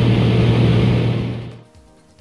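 Single-engine light aircraft's engine and propeller droning steadily in flight, heard from inside the cabin as one constant low hum with a rushing noise over it. It fades out about one and a half seconds in.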